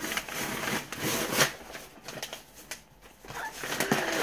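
Wrapping paper glued tightly onto a box being ripped and crinkled off in rough, uneven strokes, loudest in the first second and a half.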